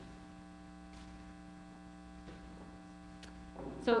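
Steady electrical mains hum of several fixed tones during a pause in speech, with a couple of faint ticks.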